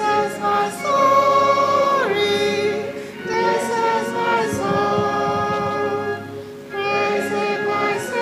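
A church congregation singing a hymn together, many voices holding long, slow notes line by line, with a brief gap for breath about six and a half seconds in.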